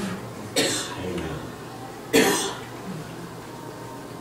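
A person coughing twice, two short sharp coughs about a second and a half apart.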